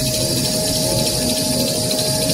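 Steady running noise of a glue-laminated kitchen-towel maxi-roll rewinding machine: an even mechanical din with a constant whine over hiss.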